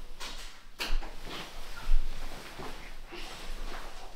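Rustling and a few short knocks from things being handled in a room, with the sharpest knock about two seconds in.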